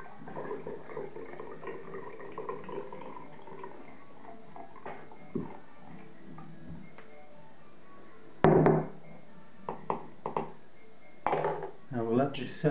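Liquid, lavender hydrosol, trickling through a funnel into a narrow glass bottle for the first few seconds. Later one sharp knock of something set down on a wooden table, then a few lighter knocks and a brief rattle as the funnel and containers are handled.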